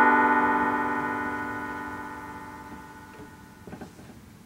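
Electronic keyboard chord ringing and fading steadily away over about three and a half seconds, with a few faint taps of a marker on a whiteboard near the end.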